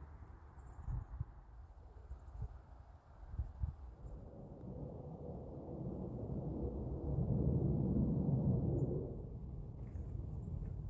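Footsteps through dry grass and gravel, growing louder as the walker approaches, with a low rumble and a few soft knocks early on.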